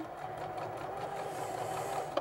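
Sewing machine running steadily, stitching a corded pintuck with a double needle under a pintuck foot; a steady, even hum.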